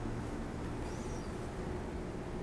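Steady low room hum with a brief, faint high squeak about a second in.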